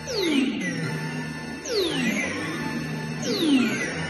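Electronic drone music from a Behringer Edge semi-modular synthesizer. Three falling pitch sweeps, about one and a half seconds apart, play over a steady low tone.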